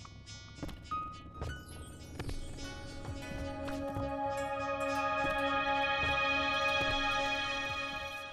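Outro music: scattered sharp percussive hits and short tones, then a sustained chord that swells up from about two and a half seconds in and holds.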